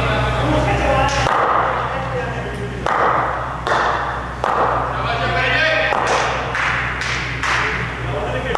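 A series of sharp thuds, about six or seven over the stretch, each ringing out with a long echo in a large, bare warehouse hall, over distant voices and a steady low hum.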